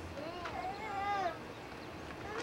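A small child's high-pitched wordless cry, about a second long, that rises and then falls in pitch.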